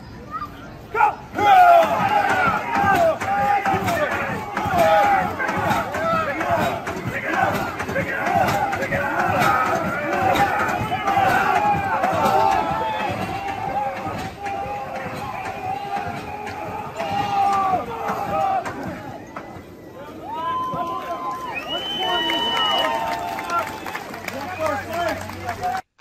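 Crew and crowd shouting and cheering together while a hand-pumped antique fire engine is worked, with knocks of the pump brakes under the voices. The shouting thins out about three quarters of the way through, leaving a few long calls near the end.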